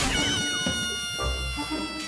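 Comedy sound effect: a long, high, cat-like wail that dips at first and then falls slowly in pitch, following a sharp hit at the start.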